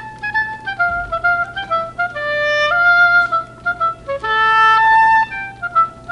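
Solo oboe playing a slow, connected phrase of held notes that steps mostly downward, then rises to a long held note about two thirds of the way through before falling away.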